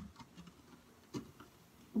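A bath bomb egg fizzing in a clear plastic bowl of water just after being dropped in: the tail of the splash, then faint scattered ticks and pops, with one sharper click about a second in.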